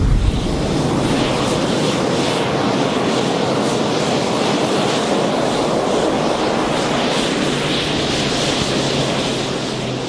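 Eurofighter Typhoon's twin EJ200 jet engines running steadily as the jet rolls along the runway, a loud, even jet noise with a faint low hum beneath it.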